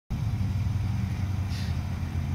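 A vehicle engine idling, heard as a steady, low-pitched hum.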